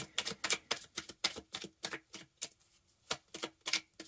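A deck of tarot cards being shuffled by hand: a quick, uneven run of card slaps and clicks, about five or six a second.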